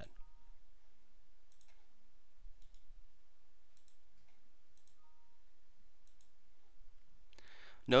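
A few faint, scattered computer mouse clicks.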